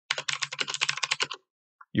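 Typing on a computer keyboard: a quick run of keystrokes lasting about a second and a half, then stopping.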